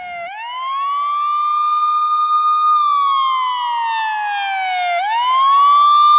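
Wailing siren: a long slow fall in pitch, then a quick sweep back up that holds for a moment, twice, getting louder toward the end.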